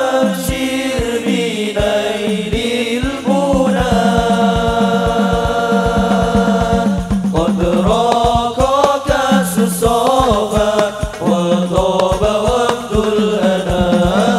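A group of male voices singing a sholawat in unison, amplified, over a quick, steady beat of rebana frame drums struck by hand.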